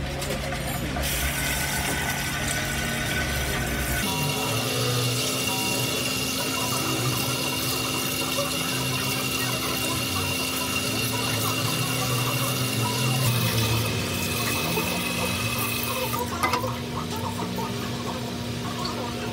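Water spraying from a handheld salon shower head onto hair at a wash basin: a steady rushing hiss that starts about a second in and stops a couple of seconds before the end, with a steady hum under it.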